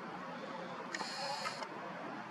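A camera's zoom motor whirs for under a second about halfway through, starting and stopping with a click, as the lens zooms out. Faint steady hiss underneath.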